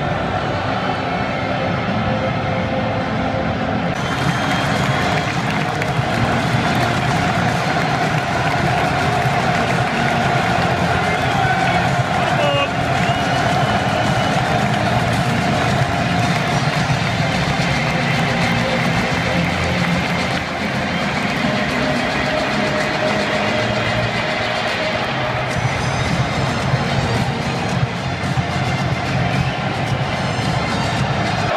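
Loud, steady stadium sound: music over the public-address system mixed with the noise of a large crowd in the stands.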